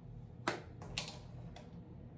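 Two sharp clicks about half a second apart, then a fainter one, from small objects being handled, over a low steady hum.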